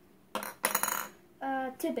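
A brief clatter of plastic Play-Doh tools and toys knocked about on a tabletop, lasting about half a second, a moment in. It is followed by a child's voice.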